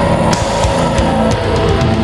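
Deathcore music: distorted electric guitars over fast, dense drums, with a held high note that sags slightly in pitch.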